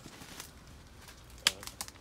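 Twigs and branches snapping as someone pushes through dense undergrowth: one sharp snap about one and a half seconds in, then a few lighter clicks.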